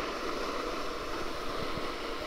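Steady rushing of wind over the camera microphone while travelling downhill on snow, mixed with the hiss of sliding over the packed snow.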